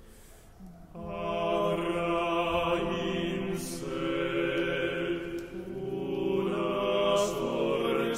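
Three male voices singing a slow a cappella chant in harmony, holding long notes in a reverberant church. A brief soft pause as the previous phrase dies away, then the voices come back in together about a second in.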